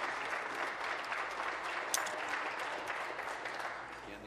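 Members of a legislative chamber applauding: a steady, dense clapping that tapers off near the end.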